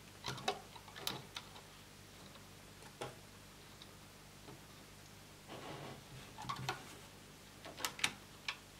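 Faint, scattered small clicks and taps as a rubber loom band is wound around the plastic pegs of a Rainbow Loom, with fingers touching the pegs; the clicks bunch near the start and again near the end.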